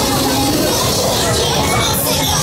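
Riders on a Loop Fighter fairground ride shouting and screaming as the gondola swings, over fairground music and crowd noise.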